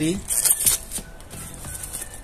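Clear plastic shrink wrap crinkling and tearing as it is pulled off the cardboard box of a new motorcycle chain kit, loudest in the first second, then quieter rustling.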